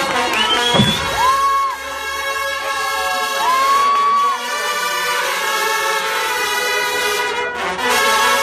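Marching band playing held brass chords, with crowd cheering in the first half.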